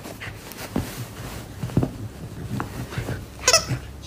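A corgi chewing a plush squeaky chicken toy: soft rustling and small clicks, then one short, wavering squawk from the toy near the end as the dog bites down.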